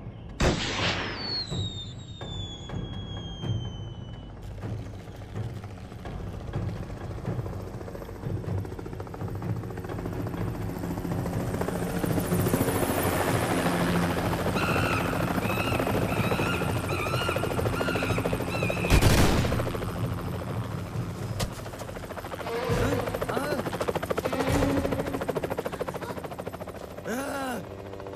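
Film sound effects: a high falling whistle at the start, then a helicopter's rotor noise building, with gunfire and one loud shot about two-thirds of the way through.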